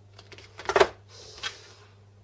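Hand cable cutters closing on a power adapter's low-voltage cable: a few small clicks, then one sharp snap a little under a second in as the cable is cut through, followed by a short rustle of the cable.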